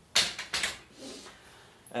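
A heavy studio tripod carrying a large-format camera is set down on a hard floor. There is a sharp knock about a quarter second in, then a second clatter about half a second later.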